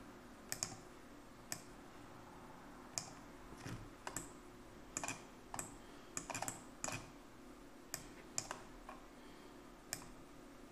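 Computer keyboard keys and mouse buttons clicking irregularly, about a dozen sharp clicks spread unevenly, over a faint steady hum.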